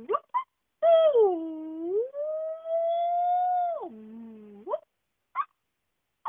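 A puppeteer's voice giving a long, wordless wail for a puppet character: it swoops down, climbs back up and holds high, then drops low, with short vocal yelps before and after it.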